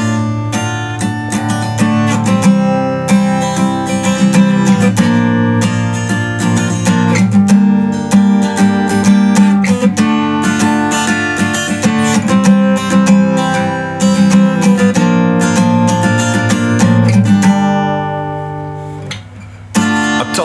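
Acoustic guitar playing strummed chords in an instrumental break with no singing. In the last two seconds a chord rings out and fades, then the strumming starts again.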